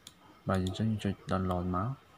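A man's voice speaking a few words for about a second and a half. It is preceded by a single sharp click at the very start, a computer mouse click.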